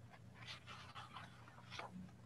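Faint room tone with a steady low hum and a few soft, short noises.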